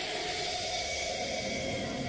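A steady rushing hiss of noise with a few faint held tones under it, the intro sound effect of a studio logo.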